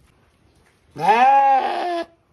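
A sheep bleating once: a loud call about a second long that starts about a second in, rising in pitch at its onset and then holding steady before it breaks off.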